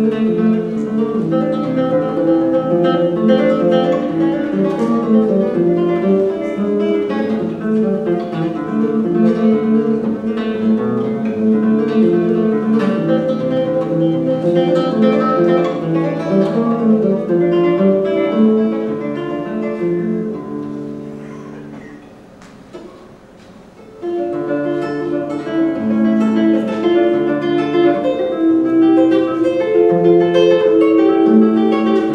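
Solo nylon-string classical guitar played fingerstyle, a continuous flow of plucked notes. About twenty seconds in the playing dies away to a soft lull, then picks up again at full strength about two seconds later.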